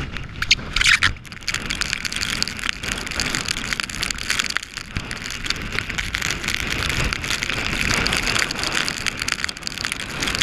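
Wind-driven heavy rain hitting the camera and waterproof clothing in storm-force wind, a dense steady hiss of fine drop ticks over the low rumble of wind buffeting the microphone, with a few louder bursts about a second in.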